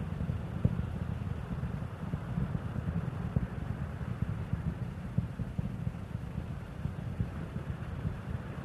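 Low, steady rumble of Space Shuttle Endeavour's rocket engines during ascent, with a few faint clicks.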